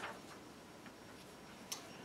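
Sheets of paper being handled in a quiet room: a short rustle right at the start, a few faint ticks, and one brief crisp paper sound near the end.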